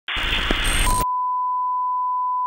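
Television static hiss for about a second, then a steady 1 kHz test-tone beep that starts under the hiss and carries on alone. This is the standard reference tone that goes with colour bars, signalling no programme signal.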